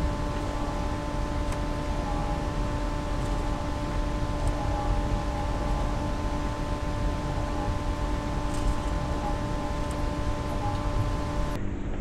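Steady machine hum with several fixed tones over an even hiss, like a fan or air-conditioning unit running; it stays unchanged throughout.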